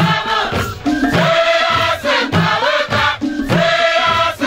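A youth choir singing together in chorus, accompanied by several hand drums played with bare hands in a steady rhythm.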